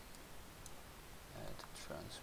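A few faint clicks of a computer mouse in the first second, followed by a man's low murmuring voice near the end.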